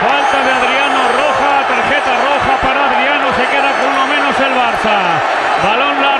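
Loud, steady stadium crowd noise from thousands of football fans reacting to a foul on a player.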